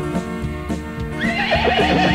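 Recorded horse whinny over country backing music: one quavering neigh starting a little over a second in and falling in pitch, as the song's desperado rides into town.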